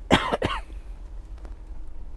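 A person coughing briefly near the start, two or three quick bursts.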